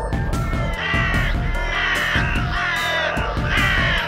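A crow cawing about five times in quick succession over background music with a steady low beat.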